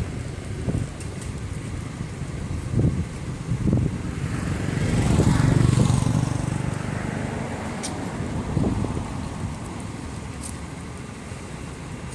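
A motor vehicle passing on a nearby road over a low background rumble: its sound builds about a third of the way in, peaks around the middle and fades away.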